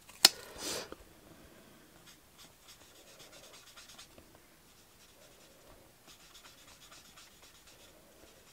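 A sharp click near the start, then the felt nib of a Stampin' Blends alcohol marker rubbing faintly and unevenly on card as small areas are coloured in.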